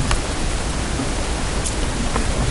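Steady, even hiss of background noise with no other sound.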